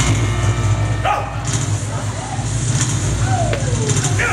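Live band at the close of a song: the held chord cuts off and a rumbling drum roll carries on under voices, including a falling shout or whoop about three seconds in.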